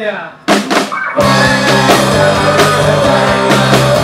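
A man's voice trails off, a few sharp drum hits land about half a second in, and just past a second a live rock band comes in loud: drum kit, bass, distorted electric guitar and strummed acoustic guitar.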